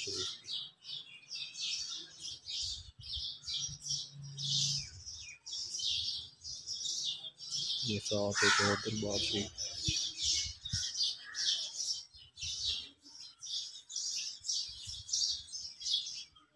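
Many small birds chirping continuously in quick, high-pitched calls. About eight seconds in comes one louder, lower call lasting about a second.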